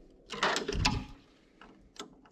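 Rustling and a few sharp clicks as a plastic headlight wiring-harness connector is handled and plugged back onto a tractor headlight bulb. The sounds come mostly in a short burst about half a second in, with a fainter click or two near the end.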